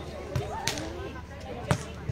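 Beach volleyball being struck by players' hands and arms during a rally: a few sharp slaps, the loudest near the end, with a short shouted call from a player.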